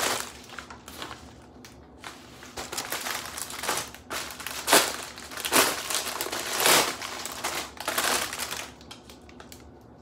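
Plastic packaging crinkling and rustling as clothing is pulled out of a padded mailer and a clear plastic bag, in irregular bursts that are loudest about halfway through and die down near the end.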